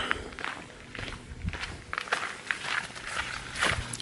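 Footsteps of a person walking, a steady run of soft steps about two a second.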